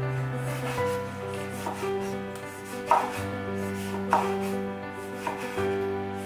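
Kitchen knife cutting food on a wooden cutting board: four crisp strikes of the blade on the board, about a second apart, the middle two the loudest. Soft background music with sustained notes plays underneath.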